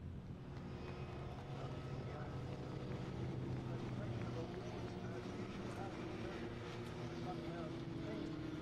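Racing pickup truck's engine running steadily at moderate revs as it drives past, its note rising gently.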